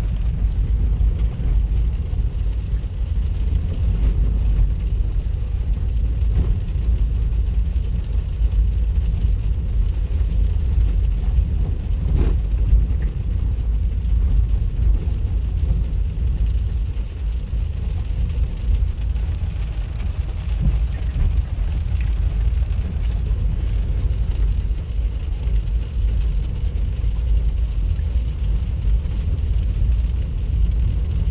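Steady low rumble of a car's cabin while driving on a dirt road, tyre and road noise heard from inside, with one light knock about twelve seconds in.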